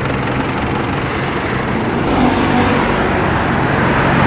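Steady road traffic noise from a slow-moving queue of cars and minibus taxis: engines running under a haze of tyre and road noise, a little louder in the second half.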